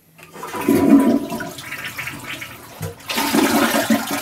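A household toilet flushing: a loud rush of water starting just after the start, easing off, then surging again about three seconds in.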